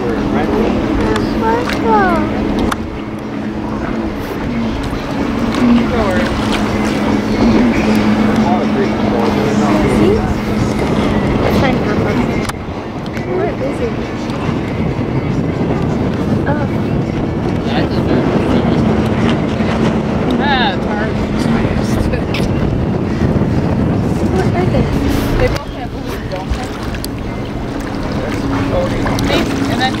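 Pontoon boat's outboard motor running steadily under way, a constant hum over the rush of water and wind, with the sound jumping abruptly in level a few times.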